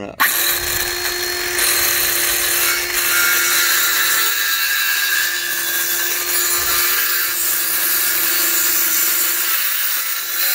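Ryobi circular saw, bevel set at 45 degrees, starting up a moment in and then running steadily as its blade cuts along a marked line through a wooden fascia board.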